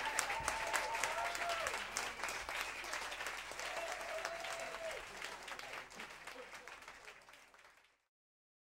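Audience applauding after a big band's set, with a few voices calling out over the clapping. The applause fades out steadily over the last few seconds until it is gone.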